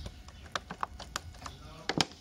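Water from a homemade watering bottle falling onto moist potting soil in a milk carton: a scatter of soft, irregular drips and taps, with a louder knock near the end as the watering stops.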